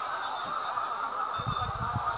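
Indistinct chatter of a large crowd of onlookers, with no clear words, and a few low bumps in the second half.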